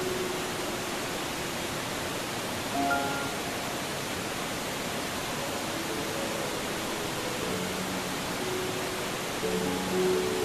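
Soft background music, a few quiet held notes, over a steady rushing hiss.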